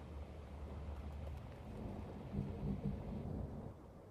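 A low, steady rumble with a faint hiss over it, and a faint low hum a little past halfway.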